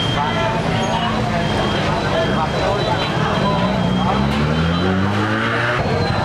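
A motorbike engine revving up nearby, its pitch rising steadily over the second half, with people talking over it.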